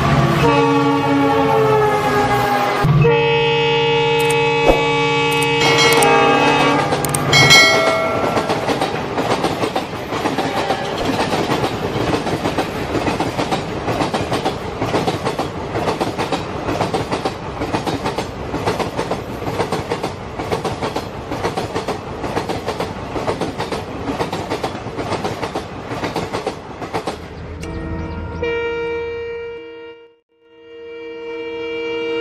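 Train sounds: a horn sounds for the first several seconds, its pitch falling at first and then held steady. Then a quick, even clickety-clack runs on, and the horn sounds again near the end.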